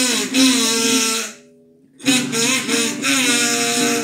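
Harmonica in a neck rack played over strummed acoustic guitar: two short phrases with notes that slide in pitch, broken by a brief, almost silent stop about a second and a half in. A guitar chord rings and fades near the end.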